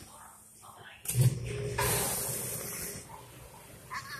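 Domestic cat hissing at a hand reaching toward it: a sudden rough onset about a second in, then a long hiss lasting about a second.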